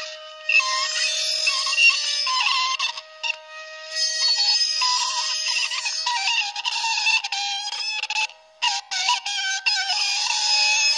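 Experimental improvised music: thin, high squealing and whistling tones that slide and waver, with no low end. A held lower tone fades out just past the middle. The sound stops abruptly for short gaps a few times.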